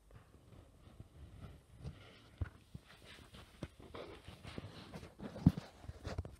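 Stylus riding the opening grooves of a 1967 lacquer acetate disc: faint surface noise with irregular crackles and pops, a few of them louder, the loudest near the end.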